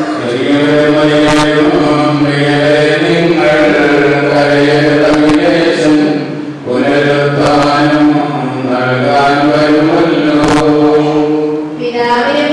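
A group of voices singing a slow church hymn or chant, with long held notes and a brief pause about six and a half seconds in.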